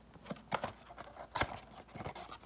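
Irregular clicks, taps and rustles of a cardboard trading-card blaster box being handled as the packs are pulled out, with the loudest knock about one and a half seconds in.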